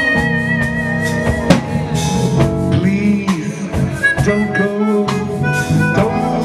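A live jazz band playing: the drum kit keeps time with steady cymbal strokes under bass and keyboard chords. A long high lead note is held for the first second and a half, and other pitched lines then come in.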